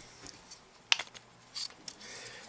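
Pull-out block of an air-conditioner fused disconnect being pulled and handled: one sharp click about a second in, then a fainter click a little later.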